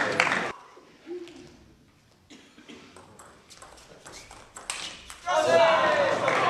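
Table tennis rally in a quiet hall: a short series of sharp clicks from the ball striking bats and table. About five seconds in, the point ends and loud shouting and cheering break out.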